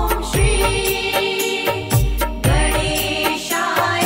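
Instrumental devotional music: sustained melody lines over a deep bass beat about every two seconds, with no voice.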